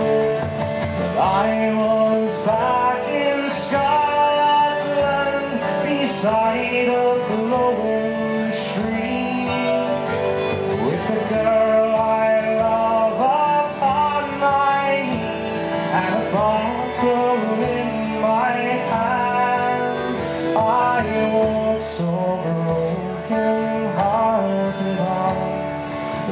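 Live folk band playing a traditional Newfoundland sea song: a man singing the lead over strummed acoustic guitar.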